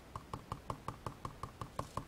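Foam-tipped stylus tool dabbing ink onto glossy cardstock: faint, quick, even taps, about six a second.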